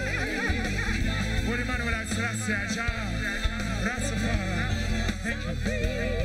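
Live reggae band music with a steady heavy bass line and lead and backing vocals singing over it.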